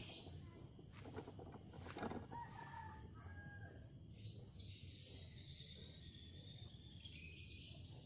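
Birds: a small bird calling in a quick run of high chirps, about four a second, for the first four seconds. A distant rooster crows faintly about two seconds in. After that a steady high hiss remains.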